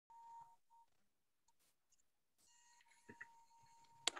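Near silence, with a faint steady electronic beep-like tone at the very start that returns about two and a half seconds in and holds, and a faint click a little after three seconds.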